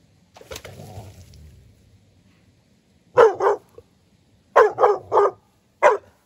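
A dog barking: two barks about three seconds in, then three in quick succession, then one more just before the end.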